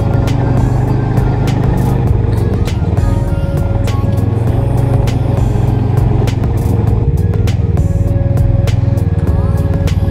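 Snowmobile engine running steadily under way, heard close up from the machine itself, mixed with background music.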